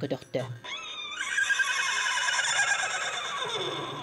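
Sakha khomus (jaw harp) playing: a low twanging drone that stops within the first second, then a high, slightly wavering sustained tone held for about two seconds that fades near the end.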